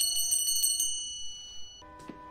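A small handbell rung rapidly. Its quick strikes stop just under a second in and the ring dies away. Soft music comes in near the end.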